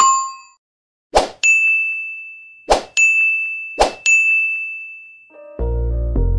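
Subscribe-button animation sound effects: three sharp clicks, each followed by a bright bell-like ding that rings out and fades, with one more ding fading at the very start. Near the end, music with a deep bass comes in.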